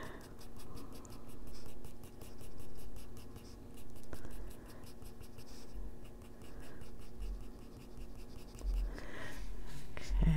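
Colored pencil scratching across Strathmore toned gray paper in repeated short shading strokes, the sound swelling and fading about once a second.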